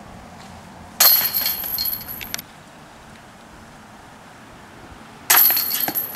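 Chains of a metal disc golf basket rattling and jingling as a thrown disc strikes them, twice: once about a second in, ringing for just over a second, and again near the end.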